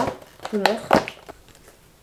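Packaging being handled: a few sharp clicks and a short rustle as a cardboard box and plastic sheet-mask sachets are taken out, with a brief vocal sound about half a second in.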